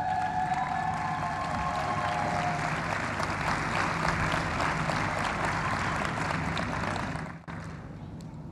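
Large indoor audience applauding, with a few held tones during the first couple of seconds. The applause dies away about seven seconds in.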